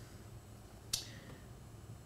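A single light, sharp click about a second in: a plastic player marker being set down or moved on a whiteboard tactics board.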